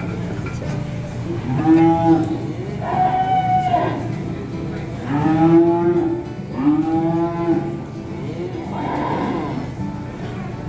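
Beef cattle mooing in the show ring: four calls of about a second each, then a fainter fifth near the end.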